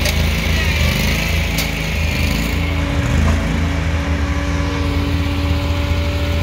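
A large engine running steadily at constant speed, with a deep, even hum.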